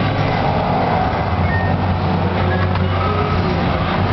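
Fruit machine in play: a steady low drone with a few short, faint electronic beeps over it.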